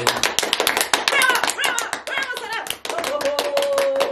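Small group of people clapping their hands fast and steadily, with cheering voices over it and one voice holding a long note near the end.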